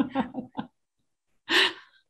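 Brief laughter over the video call, dying out within the first second; about a second and a half in comes one short, sharp breath.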